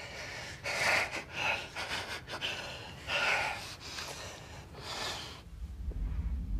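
A person breathing heavily in tearful gasps: several sharp, separate intakes and outbreaths, the strongest about a second in and about three seconds in. A low rumble starts near the end.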